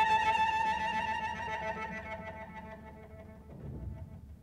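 Cello bowing a single high note with a slight vibrato, held and slowly dying away until it is nearly gone near the end.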